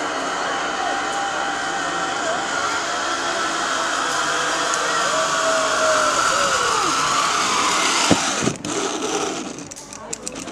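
Zip-line trolley pulley running along a steel cable, a steady whirring hiss that grows louder as the rider comes in. About eight seconds in there is a sharp clank and the run ends, and the sound drops away.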